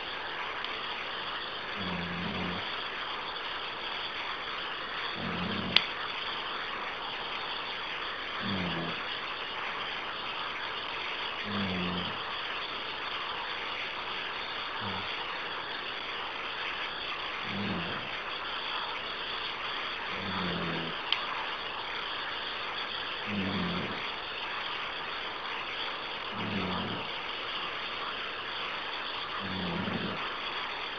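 Open conference-call phone line with a steady hiss, a short low hum pulsing about every three seconds, and a few sharp clicks.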